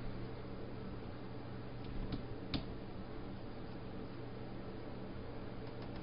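Steady low electrical hum and hiss from the recording setup, with two faint clicks a half-second apart about two seconds in.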